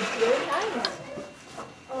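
Indistinct voices talking, which drop to a lull near the end.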